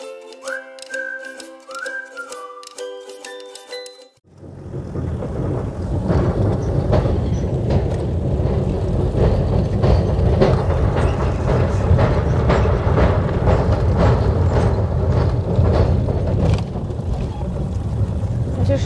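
Music for about four seconds, then the steady low rumble of a Toyota Hilux expedition truck driving, engine and road noise together. Repeated short knocks run through the rumble as the truck crosses a steel truss bridge.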